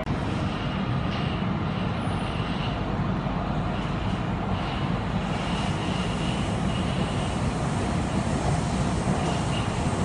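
Steady running noise of an MRT metro train heard from inside the passenger car: a constant low rumble with a faint high whine that comes and goes.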